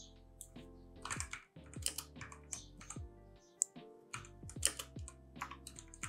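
Computer keyboard typing: irregular clusters of keystrokes as a short phrase is typed, over soft background music.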